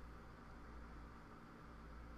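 Near silence: room tone, a faint steady low hum with a little hiss.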